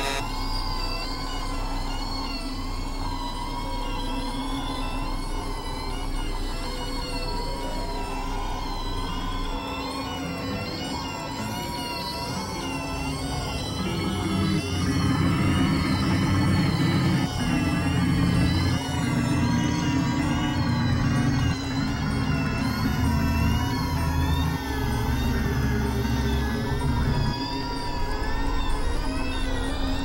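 Experimental electronic drone music: layers of warbling, wavering high synth tones over sustained notes, with heavy low bass chords coming in about a third of the way through and the music getting a little louder.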